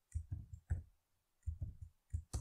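Computer keyboard keystrokes typing a short line of code, in two quick runs of clicks: about four in the first second and three more a little later.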